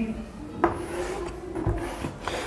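Chalk rubbing and scraping across a blackboard as lines are drawn.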